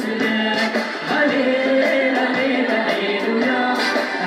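Live worship song: a woman and a man sing a melody together over a band of electro-acoustic guitar and drums, with steady cymbal strikes.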